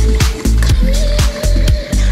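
Deep, progressive house music: a four-on-the-floor kick drum about twice a second, with hi-hats between the beats and a held synth note over it.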